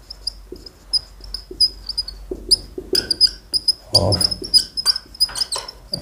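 Marker pen squeaking on a whiteboard as words are written: a rapid run of short, high squeaks with soft scratching strokes between them.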